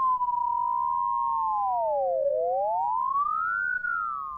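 Data sonification: two pure electronic tones gliding in pitch side by side, swooping down to a low point about two seconds in and then rising again, their pitch driven by the same data that move the animation.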